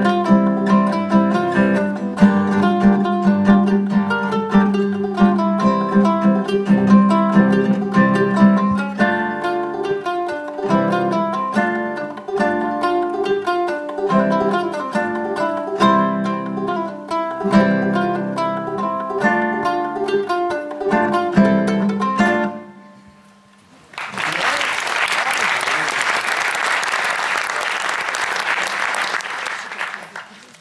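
Ohana CK-35CE concert ukulele and classical guitar playing a plucked duet that ends about three quarters of the way through. After a short pause, audience applause follows for about five seconds.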